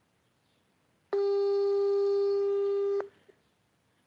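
Telephone call tone: one steady low beep lasting about two seconds, starting about a second in and cutting off sharply.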